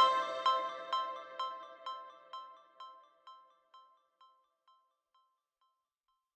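Background music: a melody of short notes, about two a second, fading out over the first three seconds or so.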